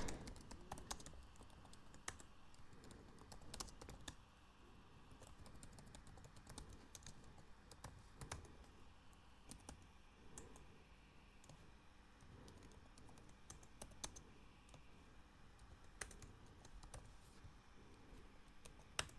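Faint computer keyboard typing: scattered, irregular key clicks with short pauses between them.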